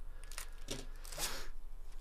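Foil trading-card pack wrapper crinkling and tearing open: a couple of short rustles, then a longer tear about a second in.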